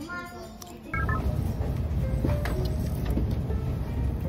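About a second in, a voice gives way to the steady low drone of an airliner cabin, with two short high beeps at the change. The drone carries on under light clicks and rustles.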